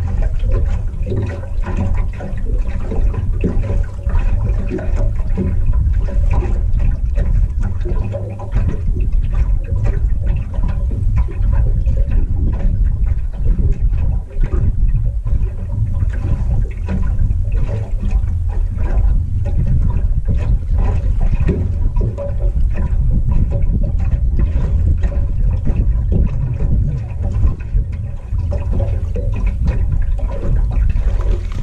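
Water lapping and slapping against the aluminum hull of a boat sitting on the river, irregular and sloshing, over a steady low rumble of wind on the microphone.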